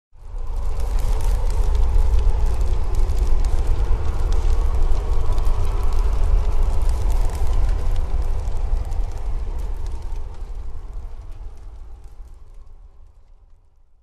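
A deep low rumble with steady crackling over it, a dark atmospheric sound effect. It swells in quickly and fades away over the last few seconds.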